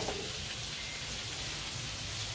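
A steady, even hiss of background noise.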